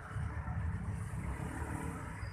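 Low, steady rumble of an approaching diesel locomotive, still some way off down the track.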